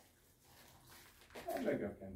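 Speech only: a quiet stretch for about a second and a half, then a man says a short word near the end.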